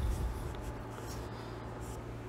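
Quiet steady background hiss with a low hum underneath, the noise floor of the recording.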